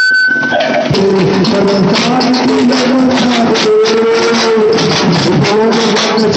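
A troupe of large double-headed drums, slung from the shoulder and beaten with sticks, playing a fast, dense rhythm. A wavering melody line carries on over the drumming.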